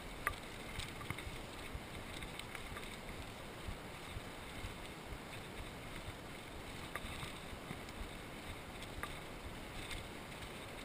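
Orange Five full-suspension mountain bike rolling fast down a gravel trail: steady tyre rumble and wind noise, with the bike rattling in small clicks and knocks over the bumps.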